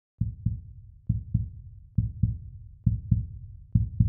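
Heartbeat sound effect: deep paired thumps in a lub-dub rhythm, about 70 beats a minute, repeating four and a half times.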